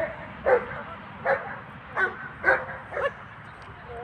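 A dog barking five times in short, sharp barks, roughly every half to three-quarters of a second.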